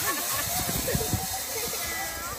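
Zip line trolley rolling along its steel cable with a rider, a steady whirring hiss, with a faint high whine near the end. Faint voices come through underneath.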